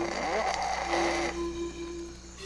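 A sleeping person snoring once, a single drawn-out breath over the first second or so, under soft held music notes.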